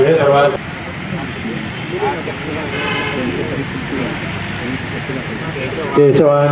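A priest's chanted Sanskrit mantra line ends about half a second in, followed by a steady background of people talking quietly among themselves, with faint outdoor noise.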